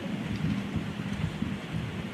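Steady low rumbling room noise with no distinct events, at a moderate level.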